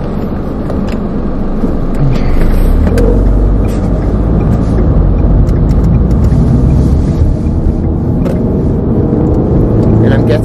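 Car driving, heard from inside the cabin: a steady road and engine rumble that grows louder about two seconds in and stays loud.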